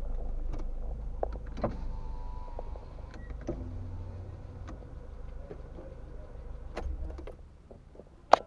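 Low rumble inside a slowly moving car with scattered clicks and knocks. About halfway through a steady low motor hum starts and runs for about four seconds, then stops near the end.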